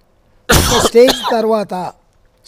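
A man clears his throat in one short, sudden burst about half a second in, then goes straight on speaking.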